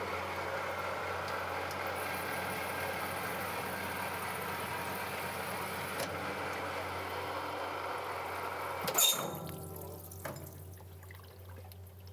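Metal lathe cutting a workpiece down to a set diameter (longitudinal turning), with water-based cutting coolant flowing over it and a steady machine hum. About nine seconds in there is a short clack, after which the sound drops to a quieter hum as the cut is finished.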